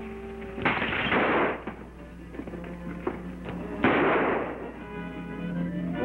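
Two gunshots about three seconds apart, each a sudden crack that fades out over about a second, over sustained dramatic background music.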